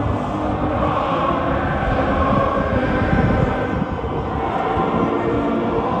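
Massed cadets singing an alma mater with a brass band in a stadium, long held chords over a loud, reverberant wash of voices and brass.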